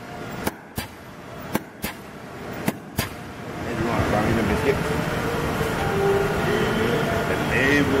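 Rousselle 15-ton mechanical punch press cycling, each stroke a pair of sharp knocks about a third of a second apart, coming about once a second. After about four seconds the knocks stop and a louder, steady rumble takes over.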